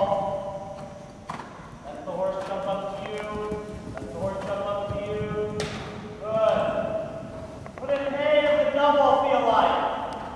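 A horse's hoofbeats as it canters on soft arena footing, with a couple of sharp knocks. Over them, a voice calls out long, drawn-out words, loudest near the end.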